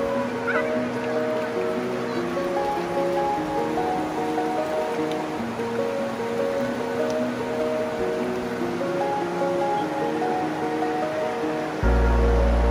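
Background music: a slow melody of held notes stepping up and down, over a steady rush of river water. A deep, much louder bass comes in just before the end.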